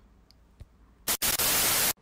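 Near silence, then a loud burst of white-noise static about a second in, lasting just under a second and cutting off suddenly, used as an edit transition between scenes.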